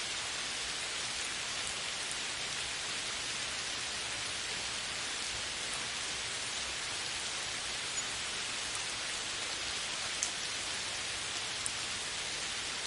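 Steady rainfall, an even hiss, with a few brief louder ticks of single drops in the second half.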